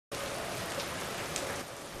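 Steady rain-like hiss that starts abruptly out of silence and holds evenly, with a couple of faint ticks in it.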